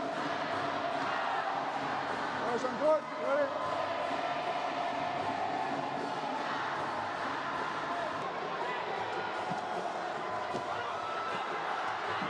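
Steady din of a large indoor arena crowd at a tied sepak takraw match, with a few brief louder shouts about three seconds in.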